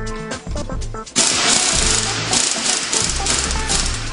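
Pneumatic impact wrench running on the strut's top piston-rod nut, a loud rattling hammering that starts about a second in and stops just before the end.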